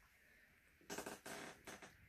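Near silence, then from about a second in a few faint, brief rustling noises.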